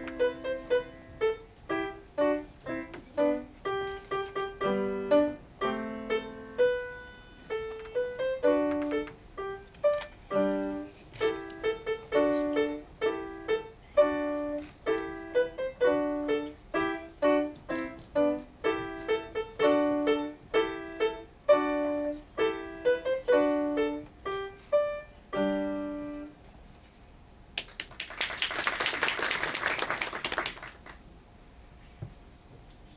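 Grand piano being played solo: a steady stream of single melody notes over lower notes and chords. The playing stops about 26 seconds in, and near the end a couple of seconds of dense noise follow.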